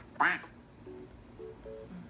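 Duck-quack sound effect: a short burst just after the start, then three brief two-note quacks in the second half.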